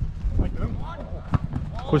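Football being struck on a grass pitch in a shooting drill: a few sharp thumps of boot on ball, the clearest about a second and a half in, with players calling in the distance.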